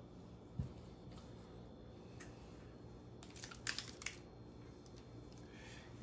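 Faint handling sounds of a metal portion scoop dropping a scoop of praline mixture onto parchment paper: a soft knock about half a second in, then a short cluster of clicks and scrapes past the middle, over a low steady room hum.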